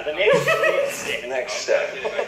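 Speech: a person talking, with no other sound standing out.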